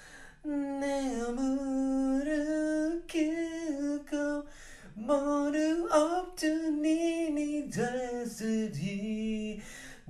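A lone voice singing a cappella in long held notes that slide up and down in pitch, with no clear words, pausing briefly about half a second in and again around the middle.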